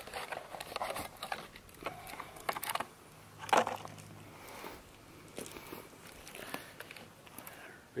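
Scattered light clicks, knocks and rustling of camping gear and packaging being handled, with one louder knock about three and a half seconds in.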